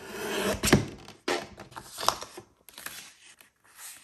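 Guillotine paper trimmer cutting a thin sliver off the end of a paper envelope: a short rasping slice ending in a sharp click from the cutting arm. Then a few softer paper rustles and taps as the envelope is handled.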